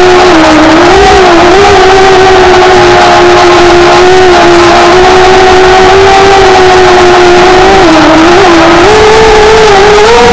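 Small quadcopter's electric motors and propellers whining in flight, heard loud from a camera mounted on the drone itself: one steady tone with overtones that wavers slightly in pitch and steps up near the end as the throttle rises.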